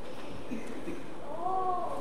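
A short, high-pitched voice that rises and falls in pitch, about one and a half seconds in.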